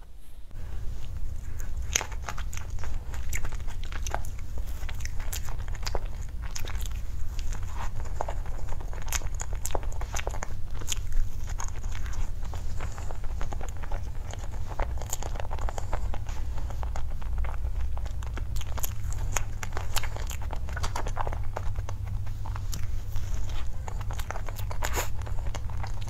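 Close-miked biting and chewing of cream-topped choux puffs: many small clicks and crackles scattered through, over a steady low hum.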